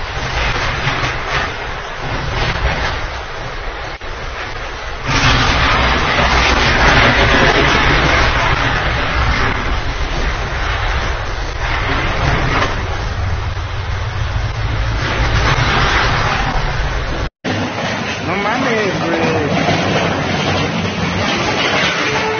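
Heavy rain and wind noise on a phone microphone: a loud, steady hiss with a low rumble that grows louder about five seconds in. After a sudden cut near the end comes quieter street noise with faint voices.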